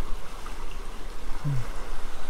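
A creek running steadily over rocks with a full, even flow: a constant rush of water.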